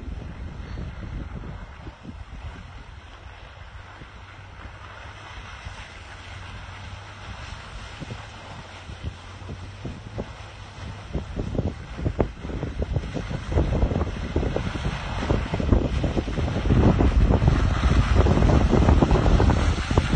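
Wind buffeting the microphone over the low rumble of a Toyota Tundra pickup's engine as it drives through mud, growing louder over the second half as the truck comes close.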